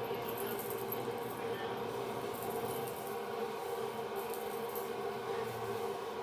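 A steady background hum, a few even tones over faint room noise, with no distinct sound events.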